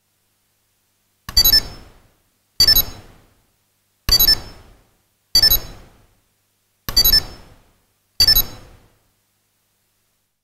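A piezo buzzer on a microcontroller board plays six short electronic tone jingles, each starting sharply and fading over about half a second, spaced a little over a second apart. These are the preset 'connection' and 'disconnection' sounds, set off in turn as a push button is pressed and released.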